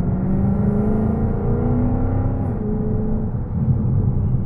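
Dodge Challenger SRT's V8 engine under way, heard inside the cabin over a steady low road rumble: its note climbs slowly for about two and a half seconds, then falls back.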